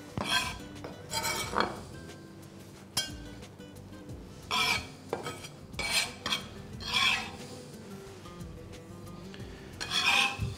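Chef's knife chopping cabbage leaves on a plastic cutting board, about six short, irregular bursts of cutting, with faint background music underneath.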